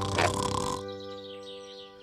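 Soft cartoon background music of held notes that slowly fades, with a short airy effect in the first second.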